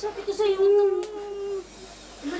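A woman crying out in one long, wavering wail, about a second long, as she breaks down in tears.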